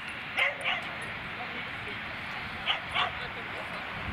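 A dog barking in short barks: two quick pairs, one early and one near the end, while running an agility course.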